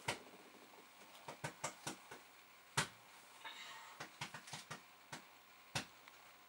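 Irregular sharp little clicks and taps, about a dozen, the loudest near the middle, from a removed chip and small parts being handled at the bench.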